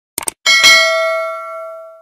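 Subscribe-animation sound effect: two quick mouse clicks, then a notification bell dings, struck twice in quick succession, and rings on with several steady tones, fading away over about a second and a half.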